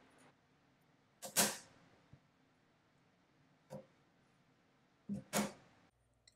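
Sharp metal clacks from the levers of a 1910 Herzstark Austria Model V mechanical calculator being worked by hand. A double clack comes about a second and a half in, a single one near four seconds, and another double near the end.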